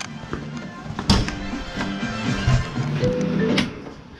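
Music playing from a radio, with a sharp knock about a second in.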